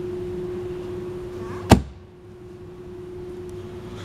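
A padded backrest lid being shut on a fiberglass boat-seat storage compartment: one sharp thud about two seconds in. A steady low hum runs throughout.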